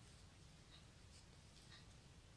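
Near silence with a few faint light clicks and scrapes of knitting needles working yarn.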